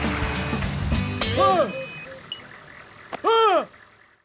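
Cartoon tow truck engine rumbling low as it drives past, over background music. This is followed by two short cartoon-character vocal calls that rise and fall in pitch, about a second in and again near the end.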